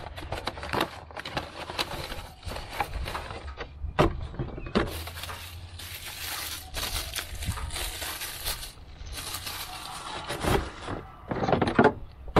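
Handling packaging: a cardboard box opened and a new K&N panel air filter taken out and unwrapped from its plastic bag, with crinkling plastic and a scattering of clicks and knocks. The crinkling is densest about halfway through.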